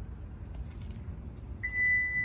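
A single steady, high electronic beep from the 2022 Toyota RAV4 Hybrid, starting about a second and a half in and lasting under a second, over a low background rumble.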